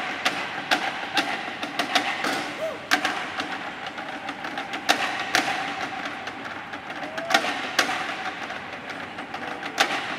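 Kitchen utensils played as percussion: stainless steel bowls, pots and pans struck in an irregular pattern of sharp metallic hits, with a ringing tone lingering between the strokes.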